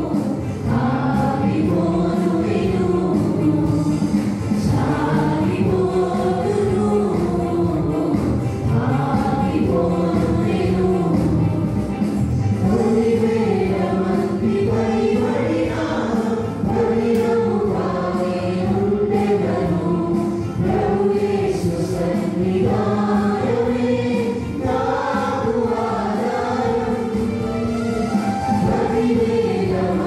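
A mixed choir of young women and men singing a Telugu Christian song together through microphones and a PA system, with electronic keyboard accompaniment.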